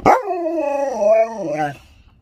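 A husky-malamute dog gives one 'talking' howl lasting about a second and a half. It starts sharply and its pitch rises and falls as if it were saying words.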